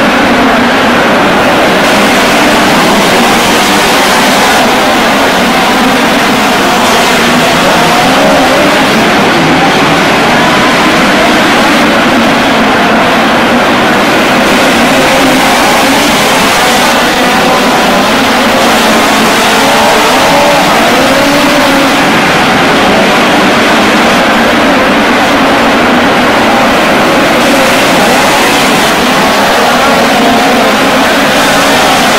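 A pack of midget race cars racing on a dirt oval, their engines revving up and down continuously through the turns, inside an enclosed arena.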